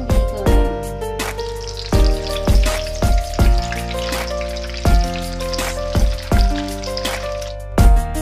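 Hot oil sizzling as egg-coated beef roulade rolls fry in a shallow pan, the hiss thickening as more rolls go in. Background music with a bass beat plays over it and is the louder sound.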